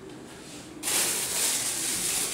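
Crinkly rustling of a plastic-wrapped power cord being picked up and handled. It starts suddenly about a second in and keeps going.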